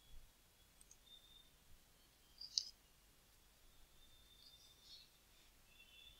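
Near silence: room tone, with a few faint ticks and one clearer click a little before halfway, like a computer mouse button being clicked.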